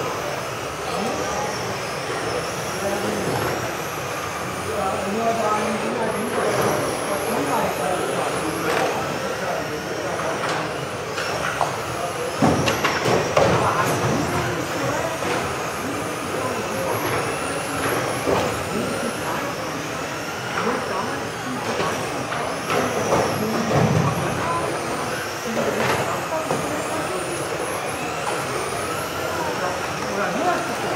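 Several electric radio-controlled model cars racing, their motors giving high whines that rise and fall as they speed up and slow down, mixed with tyre and chassis noise. Voices are heard throughout.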